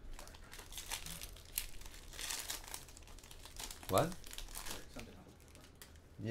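The foil wrapper of a 2014 Bowman jumbo pack of baseball cards is crinkling and tearing as it is pulled open by hand, in an irregular crackle over the first few seconds. A brief voice sound comes about four seconds in.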